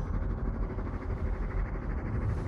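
A low, steady rumble with no distinct events: the dark underscore of a film trailer's sound design.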